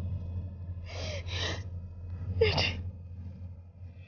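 A woman sobbing with three sharp, gasping in-breaths: one about a second in, another just after, and a third at about two and a half seconds. A steady low hum runs underneath.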